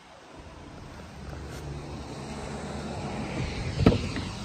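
Car interior engine and road noise, a steady rumble that grows louder as the car picks up speed, with one sharp thump just before the end.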